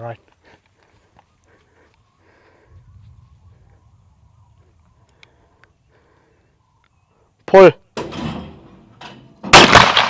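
A shouted "pull!", then about two seconds later a single shotgun shot at a skeet target: one sharp, very loud report near the end, with a long echoing tail. The clay is hit ("smoked it").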